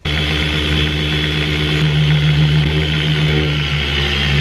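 Dual-action polisher with a foam cutting pad running on car paint with cutting compound, the cutting stage of a paint correction. It starts abruptly and runs loud and steady with an even motor hum.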